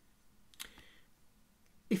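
Near-silent room tone broken by one short, sharp click about half a second in, with a man's voice starting at the very end.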